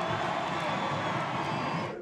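Crowd noise: many voices talking and calling out at once in a dense, steady din with no single voice standing out, cut off right at the end.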